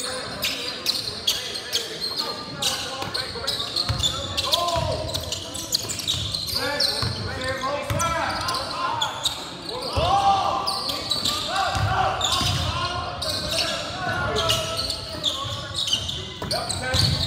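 A basketball being dribbled on a hardwood gym floor, short repeated bounces, with players and spectators shouting throughout.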